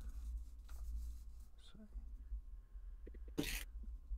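A low steady microphone hum with a few faint clicks, then one short, sharp breathy burst from a person about three and a half seconds in.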